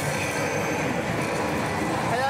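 Steady, dense din of a pachislot hall: many slot machines' effects and noise blending into one continuous wash of sound.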